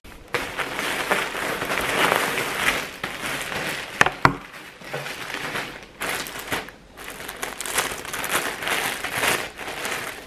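Plastic packaging crinkling as a mail-order parcel of clothing is unwrapped by hand, with two sharp clicks about four seconds in.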